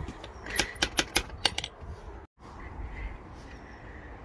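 A quick series of sharp metallic raps about half a second in, lasting about a second: knocking on a front door. The raps are followed by quiet outdoor background.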